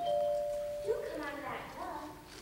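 Two-note falling chime, like a doorbell's ding-dong, lasting about a second. About a second in, a voice follows.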